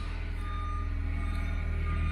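A vehicle's reversing alarm sounding a few evenly spaced single-pitch beeps over a steady low hum.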